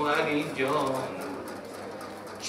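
A man's voice chanting a mournful recitation in long held, wavering notes, trailing off to a quieter tone about a second in.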